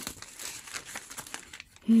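Paper and card pages of a handmade journal rustling and flapping as they are leafed through by hand, with a few small ticks.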